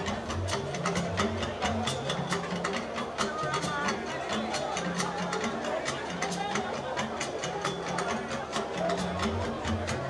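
A live band playing, with a repeating bass line and busy, quick percussion strokes.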